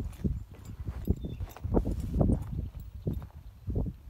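Hoofbeats of a horse walking on loose dirt, a series of irregular, dull steps.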